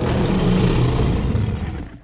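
A loud, steady, noisy rumble, heaviest in the low end, that fades out near the end and gives way to silence.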